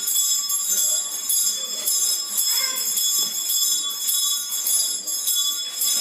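Small ritual bells shaken in a steady rhythm, ringing continuously, with faint voices underneath.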